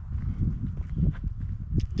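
Footsteps on dry dirt ground, a run of irregular low thumps, with a low rumble on the handheld microphone.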